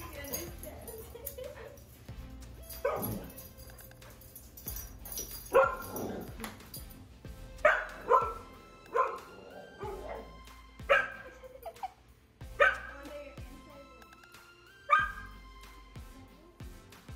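A dog barking in single short barks, about eight of them, a second or two apart, while playing with a person.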